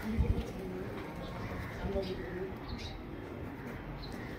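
A pigeon cooing faintly, a few low soft calls over steady outdoor background, with a couple of low thumps just at the start.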